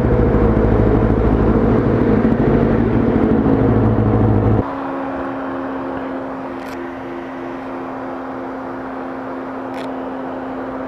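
Kawasaki ZX-9R sportbike's inline-four engine idling steadily, cutting off suddenly a little under five seconds in. After the cut a quieter steady hum with a faintly pulsing tone remains.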